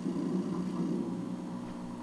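Steady low background noise with a faint hum, with no distinct event.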